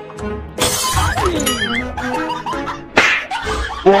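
Edited-in background music with a steady beat and a warbling melody, broken by two sudden crash-like hits, one about half a second in and one about three seconds in.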